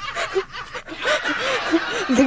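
A young woman laughing in short snickers and chuckles.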